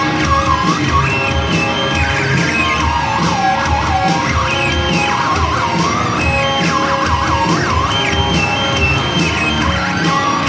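Live band music played loud: a steady driving beat under a high, wavering lead line that bends and wobbles in pitch like a siren.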